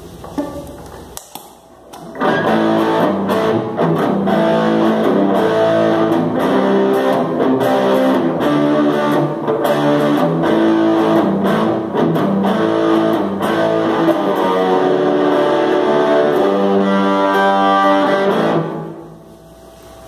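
Les Paul-style electric guitar played through a Fuhrmann Punch Box overdrive pedal set to low gain, giving a mildly driven tone. Riffs and chords start about two seconds in and stop about a second before the end.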